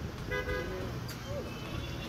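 A vehicle horn gives one short toot about a third of a second in, over a steady low rumble of street traffic and faint voices.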